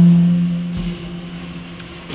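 A low sustained note from a small jazz combo rings out and fades away over about two seconds, leaving a short lull in the music.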